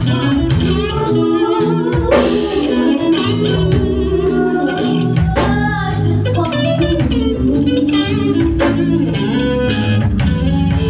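Live band performance: a woman singing through a microphone over electric guitar, bass guitar and a drum kit keeping a steady beat.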